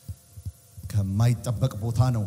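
A man's voice speaking into a microphone over loudspeakers, starting about a second in after a brief lull.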